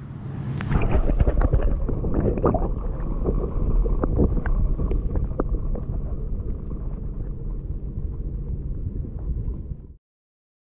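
Water sloshing and swirling heard through a submerged camera: a muffled, continuous low rumble with scattered knocks and clicks, which cuts off suddenly at the end.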